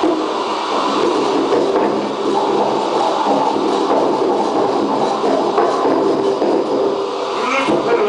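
Live electronic noise music: a dense, steady drone of layered held tones over a noisy hiss, with a few sharper sounds near the end.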